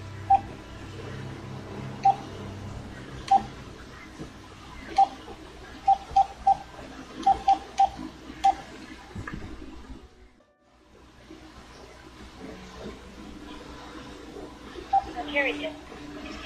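Phone keypad tones as a number is dialled: about eleven short beeps, some in quick runs, over the first eight or nine seconds.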